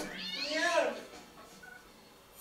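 A single cat meow, about a second long, rising then falling in pitch.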